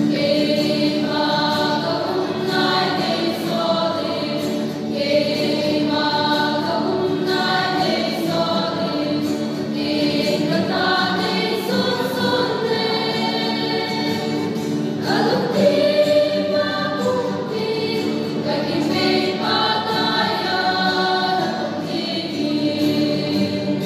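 Mixed choir of young women and men singing a church song together, accompanied by an acoustic guitar.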